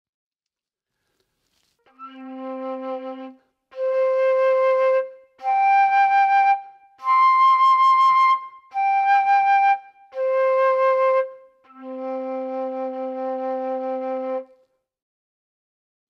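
Flute with all keys closed, overblown through its harmonic series: seven held notes on the one fingering, climbing from the low C to its octave, the twelfth and two octaves up, then stepping back down to the low C, which is held longest.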